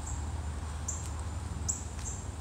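Short, high-pitched chirps repeating about every second, over a steady low rumble.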